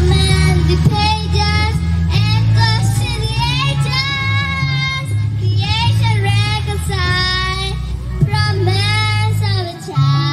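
A young girl singing a Christmas song into a microphone through a stage PA, over a pre-recorded backing track with a steady bass line. The backing drops out briefly near the end.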